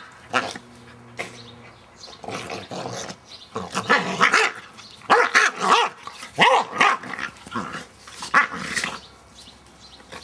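Dogs play-fighting, growling and barking in rough bursts that come thickest in the second half.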